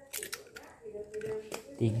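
A raw egg being cracked over a plastic mixing bowl: a few quick sharp clicks of shell near the start, then soft handling sounds.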